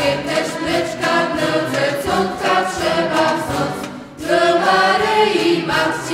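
Mixed choir of men's and women's voices singing a Kashubian folk Christmas carol, with a brief breath between phrases just before four seconds in.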